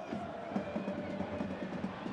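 Steady football stadium crowd noise, with supporters chanting in the stands.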